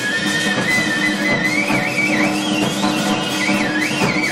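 Free-jazz saxophone and drum kit improvising: the saxophone plays a high, wavering line that climbs and wobbles in pitch in the second half, over dense, busy drumming with cymbals.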